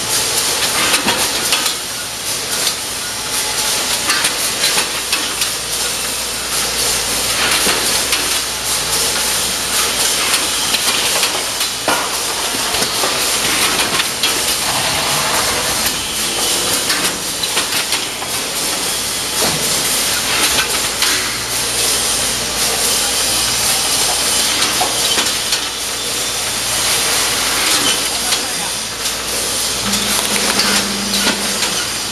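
Automatic carton case-packing machine running: a loud, steady hiss with scattered clacks and knocks from its moving parts.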